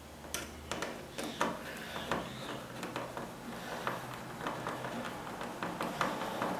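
A hand screwdriver drives a light switch's mounting screws into a plastic cut-in electrical box, making a run of small, irregular metal clicks and ticks.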